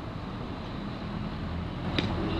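Steady low outdoor rumble with no distinct events, ending in a brief click.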